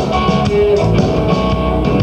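Live blues-rock band playing an instrumental passage without vocals: electric guitar over a steady drum kit and bass.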